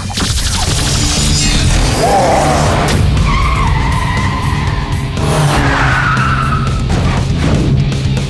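Cartoon sound effects of small racing cars driving and skidding, over background music with steady low notes.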